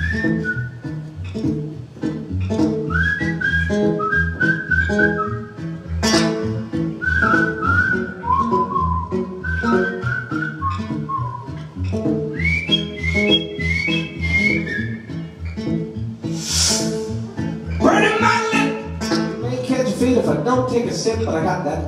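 A man whistling a melody into the microphone over his own strummed acoustic guitar, as a whistled solo within the song. The notes scoop up into pitch and climb higher in the second half.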